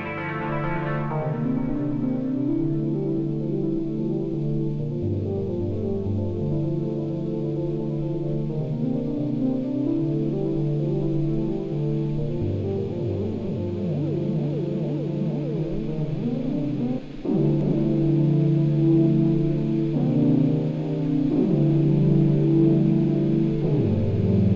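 Synthesizer chord progression playing back: sustained chords that change every couple of seconds, with notes gliding in pitch a little past the middle and a brief drop-out shortly after.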